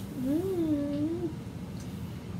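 One drawn-out vocal call, about a second long, rising in pitch and then falling away, over a steady low room hum.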